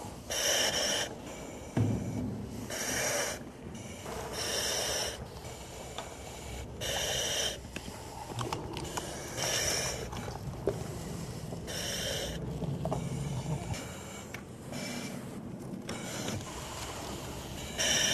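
Breathing through a Dräger self-contained breathing apparatus: regular hissing breaths through the mask's demand valve, every two to three seconds, over rustling and handling noise, with a thump about two seconds in.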